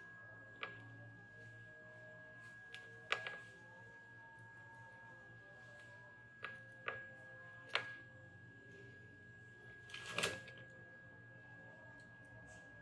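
Sharp clicks and taps of small tools and parts being handled on an electronics workbench, about half a dozen spread out, with a louder short clatter about ten seconds in. A steady high-pitched tone sounds throughout.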